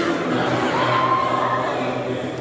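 A group of voices singing a song in chorus, with a long held note in the middle.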